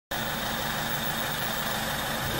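Steady mechanical hum and hiss of tyre-workshop machinery, running evenly without change.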